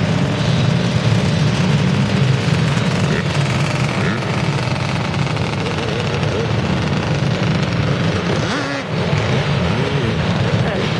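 Several dirt bike and four-wheeler engines running at once, a steady loud din of overlapping motors.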